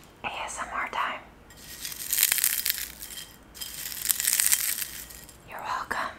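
Dry, brittle microwave-crisped cucumber skins crackling and crumbling as they are crushed between fingertips, in two stretches of about two seconds each.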